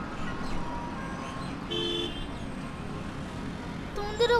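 Steady street traffic noise, with one short vehicle horn honk near the middle.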